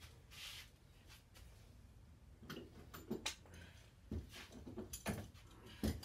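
Metal clamps being set and tightened on a glued-up stack of curved wood strips in a bending jig: scattered light clicks and knocks, the loudest near the end.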